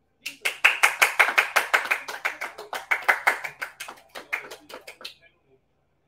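Rapid handclapping, about six or seven claps a second for nearly five seconds, fading somewhat toward the end.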